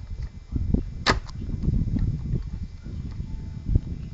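A corrugated rubber boot being pushed and worked by hand onto a rod on a bare gearbox casing. Irregular rubbing and handling noise with small knocks, a short sharp sound about a second in and a louder thump near the end; the boot is a tight, difficult fit.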